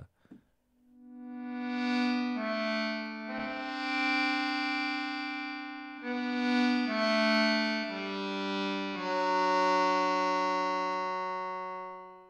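Mum's Accordion, a Kontakt sample instrument of an old accordion, played from a keyboard: held reed notes and chords that swell in about a second in, change note several times, and fade away near the end.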